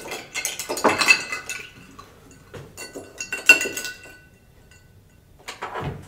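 A metal spoon stirring a whiskey cocktail in a glass, clinking against the glass several times with a short glassy ring. The clinks die away about four seconds in.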